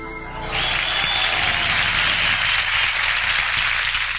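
Concert audience applauding at the end of a song. The applause begins about half a second in, as the band's last notes die away, and carries on steadily.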